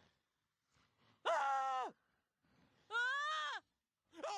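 Two loud screams from people in the grip of night terrors, each under a second long and about a second and a half apart. The second scream rises and then falls in pitch.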